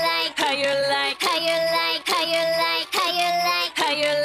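A high, childlike sung voice over music, from a Wombo.ai lip-sync song, repeating the same short sung note about six times, each one starting with a quick drop in pitch.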